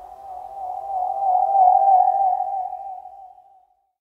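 The closing note of a reggae dub track: a single sustained wavering tone with a slow vibrato. It swells about a second in, then fades away a little before the end.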